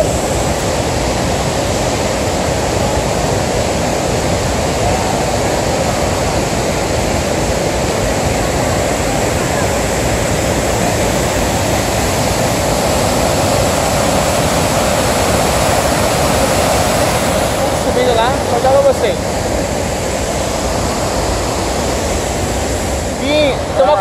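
The steady rush of the Iguaçu Falls, water thundering down and churning through the rocky river below. A few brief voices break in about 18 seconds in and again near the end.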